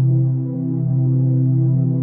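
Ambient electronic music: a low, steady synthesizer drone with a stack of overtones.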